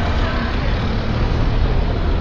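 A small van driving slowly past close by, its engine and tyres making a steady low rumble over street noise.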